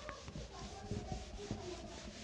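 Faint rubbing of a cloth duster wiping marker writing off a whiteboard, in irregular strokes.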